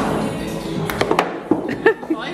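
Background music, with three quick knocks about a second in from a mini-golf ball striking the putter or the course's obstacle.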